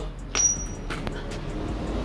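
A metal object set down or dropped on a hard surface, one sharp clink with a brief high ring about a third of a second in, then a faint tick about a second in.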